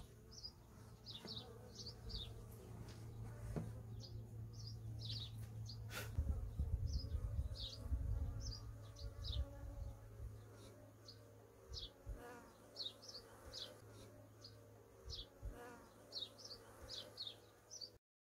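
Honeybees buzzing at an opened hive, a steady low hum, with many short, high chirps of small birds scattered throughout. A few low bumps and a sharp click sound about six to eight seconds in.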